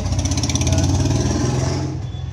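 A motor vehicle's engine running with a rapid pulsing beat, growing louder and then easing off near the end, as when a vehicle passes.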